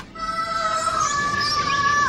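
A long high held note in a cartoon soundtrack, stepping up to a higher pitch about a second in, over a faint rushing hiss.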